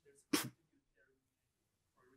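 A single sharp, loud burst about a third of a second in, over faint speech.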